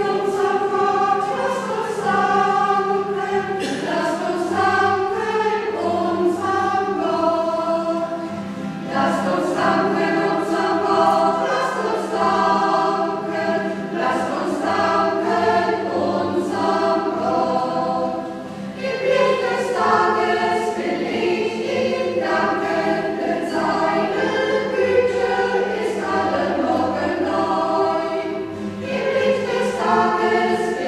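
A choir singing a hymn in several parts in a church, over a steady low held note.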